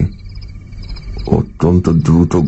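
A chorus of frogs calling in quick, steady pulses, laid as a night-time background effect over a low hum. A man's voice comes back in near the end.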